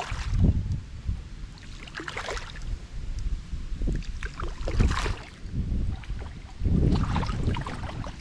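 Hooked thin-lipped grey mullet splashing at the surface beside a kayak as it is played in, in a few irregular bursts, with wind rumbling on the microphone.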